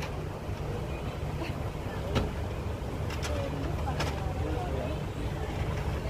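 Steady low rumble of an idling vehicle engine, with faint voices and a few sharp clicks about two, three and four seconds in.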